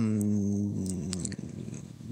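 A man's voice holding a long, low drawn-out hesitation sound, an 'uhhh' on one steady pitch that slowly trails off.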